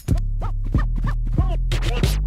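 Hip hop beat with turntable scratching: a record is scratched back and forth about three or four times a second over a steady, bass-heavy groove.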